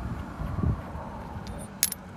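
Hands handling and unscrewing a Jeep mirror ball-mount bracket: low rumbling handling noise, then one sharp click near the end as the parts knock together.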